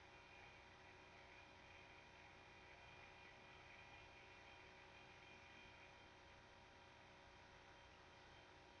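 Near silence: a faint steady hiss and hum.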